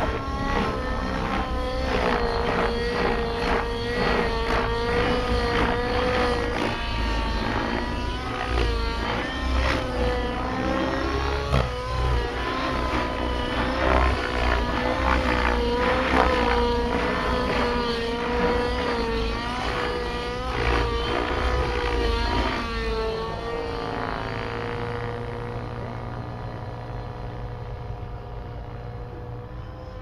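Radio-controlled model helicopter flying overhead: a steady whine from its motor and rotor that wavers up and down in pitch as it manoeuvres. It fades over the last few seconds as it climbs away.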